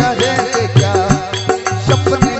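Instrumental passage of a Rajasthani folk bhajan: a harmonium playing melody over a held drone, with a dholak keeping a steady beat whose bass strokes glide up in pitch.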